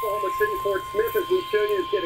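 Weather-radio warning alert tone: a steady single-pitched tone a little above 1 kHz, held under quieter speech, consistent with the 1050 Hz alarm tone that flags a weather warning.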